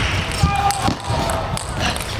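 Celluloid-style table tennis ball clicking sharply off the rackets and table in a fast rally, about one hit every half second, over the voices and murmur of spectators in the arena.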